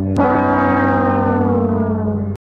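Sad-trombone sound effect: one long brass note held and slowly sagging in pitch, the drawn-out last note of the descending 'wah-wah-wah' failure jingle.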